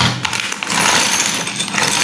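Clear plastic bags of Lego pieces being handled and pulled open, crinkling and rustling loudly, thickest from about half a second in.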